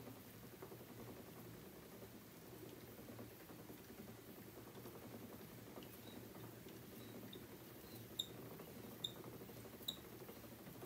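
A wooden spinning wheel turning quietly, its flyer whirring softly as hand-drafted wool is spun and drawn onto the bobbin. A few small, sharp ticks come near the end.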